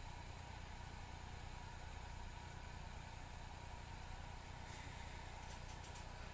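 Quiet room tone: a steady low electrical hum and hiss, with a few faint clicks near the end.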